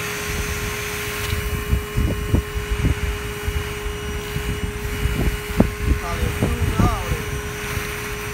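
Everything Bee Vac bee vacuum running steadily with a constant whine while its hose takes a bee swarm off a picnic table, with uneven low thumps and rumbles over it.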